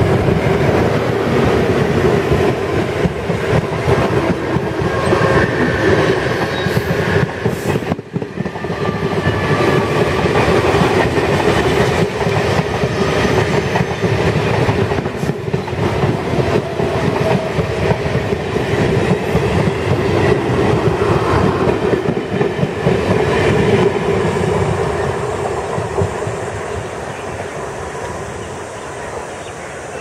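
WDM-2 diesel locomotive with its ALCo engine running passes close by, followed by the hauled EMU coaches, their wheels clattering rhythmically over the rail joints. The sound stays loud and steady, then fades over the last several seconds as the train moves off.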